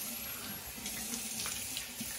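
Water running steadily from a bathroom sink tap as a face is rinsed under it.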